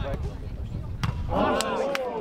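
A football kicked hard once, a sharp thump about a second in, followed by a loud shout from a player.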